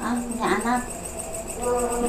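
A cricket chirping continuously in a high, rapid trill of evenly spaced pulses.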